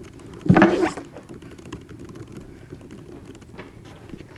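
Faint clicking of laptop keyboards being typed on, with one brief loud hit about half a second in.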